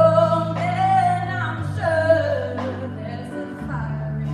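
A woman singing a solo with a live band, holding long notes over sustained low accompaniment, with light beats about once a second.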